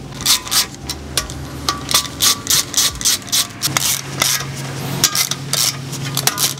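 Hand socket ratchet clicking, about three clicks a second, as it snugs the ARP main stud nuts down on an RB26 main girdle.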